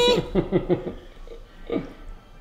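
A man chuckling: a fast run of short laughs that trails off and thins out, with one last chuckle near the end.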